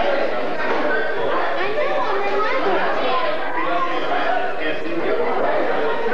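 Many people talking at once: a steady hubbub of overlapping, indistinct conversation with no single voice standing out.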